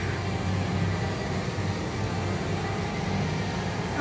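Steady indoor background noise: a low, even hum with a hiss above it.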